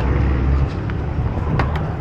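A car idling with a steady low rumble, with a few short clicks and rustles as a backpack is handled in the back seat.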